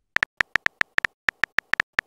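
Simulated phone keyboard key-tap sounds: a quick, uneven string of short, sharp, pitched clicks, about six a second, one for each letter typed into a text message.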